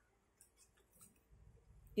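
Scissors cutting folded paper: a few faint, short snips.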